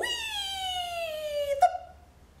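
A woman's voice calling a long, high 'Wheee!' that glides steadily down in pitch for about a second and a half, a sound effect voiced for a picture-book story; a sharp click and a brief short note follow near the end.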